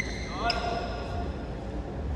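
Badminton rackets striking a shuttlecock: a sharp hit right at the start and another about half a second in, followed by a short pitched squeak.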